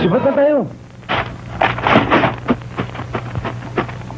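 Action-film soundtrack: a held sung or shouted note breaks off at the start, then a quick, irregular series of sharp bangs for about three seconds over a steady low hum.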